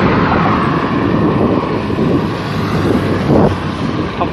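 Wind buffeting the microphone of a camera carried on a moving bicycle, a loud, steady rushing noise.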